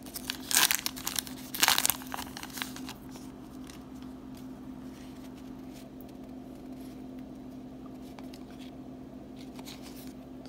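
A Topps Allen & Ginter baseball card pack wrapper crinkling and tearing as it is opened by hand, in loud crackly bursts over the first three seconds. After that only a steady low hum remains.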